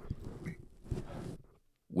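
Large foam windscreen being pulled off a Rode PodMic dynamic microphone: rustling, scraping handling noise with a few faint clicks, picked up close by the mic itself. It stops after about a second and a half and the sound cuts off to silence.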